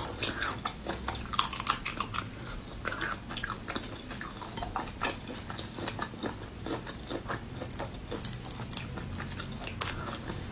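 Raw marinated shrimp being peeled by hand close to the microphone: quick, irregular clicks and crackles of wet shell breaking and pulling away, the sharpest about one and a half seconds in.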